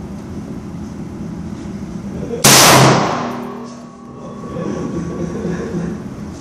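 A single rifle shot from a Romanian PSL in 7.62x54R, about two and a half seconds in, loud enough to clip, with a ringing tail that fades over about a second and a half.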